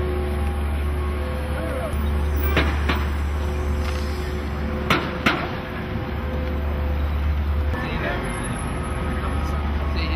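Busy city street ambience: a steady low traffic rumble under the voices of passers-by. There are two pairs of sharp clicks or knocks, a lighter pair a few seconds in and a louder pair about halfway.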